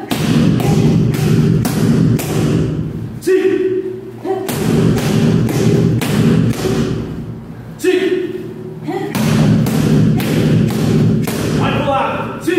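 Round kick pads struck by repeated shin kicks in quick succession, a run of sharp thuds. There are three runs, each broken by a brief shout, about three seconds and eight seconds in and again near the end.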